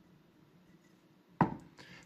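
Small glass jar set down on a wooden cutting board: one sharp knock about one and a half seconds in, followed by a lighter tap.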